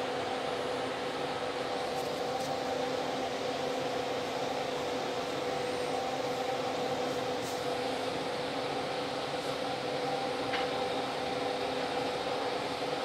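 Built-in DOOYA tubular motor of a motorized zip-track roller blind running as the blind lowers, a steady even hum.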